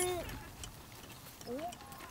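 A woman's speaking voice trails off at the start, then a short pause. A brief rising vocal sound follows about one and a half seconds in.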